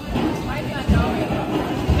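Voices and chatter from people nearby in a busy room, with two dull low thumps about a second apart.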